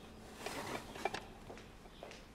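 Tableware being picked up on a serving tray: a few soft clinks and knocks in the middle, over quiet room tone.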